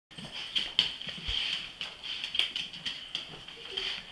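Two excited dogs moving about, with irregular sharp clicks.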